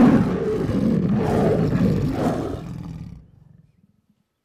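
A lion roaring: one long, loud roar that fades away about three seconds in.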